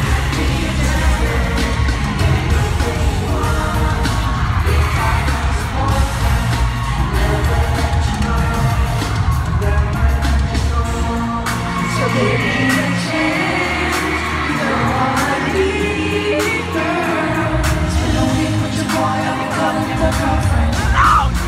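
Live pop song over an arena sound system, recorded on a phone from high in the stands: a lead vocal over a beat with heavy bass. The bass drops out for a few seconds past the middle, then comes back.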